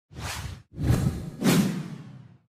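Whoosh sound effects of an animated logo reveal: a short whoosh, then a longer, louder one that swells twice and fades out.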